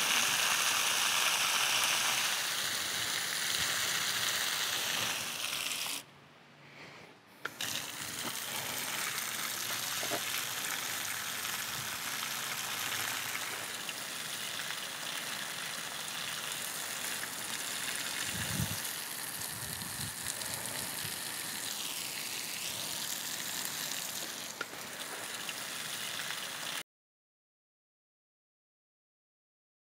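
Garden hose spray nozzle sending a jet of water onto a hedge and plants: a steady hiss, loudest in the first couple of seconds, with a short break about six seconds in, then cutting off abruptly near the end.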